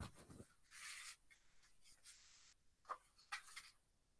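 Faint sounds of a person getting up from a chair and moving away: a soft knock at the start, then rustling. A few short, high squeaks follow near the end.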